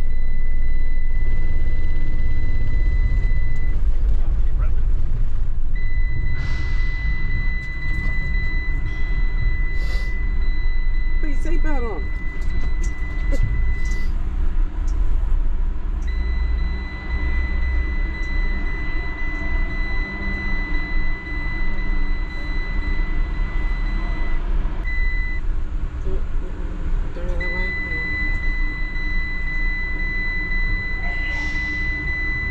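Low rumble of the van's engine and tyres heard from inside the cab as it drives up the ramp and across the ferry's steel vehicle deck. A steady high-pitched electronic tone sounds on and off throughout, with a few clicks and knocks around the middle.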